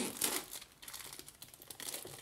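Clear plastic shrink-wrap film being peeled off a cardboard box and crinkling, loudest at the start, then a scatter of lighter crackles.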